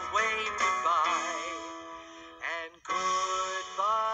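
Children's song: a man singing with a wavering vibrato over bright backing music, with a short break about three seconds in.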